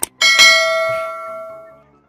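A bell struck once, its ringing fading away over about a second and a half, just after a short sharp click.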